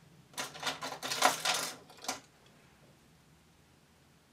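Quick run of sharp metallic clicks and rattles lasting about two seconds, from hands working at a domestic knitting machine's metal needle bed.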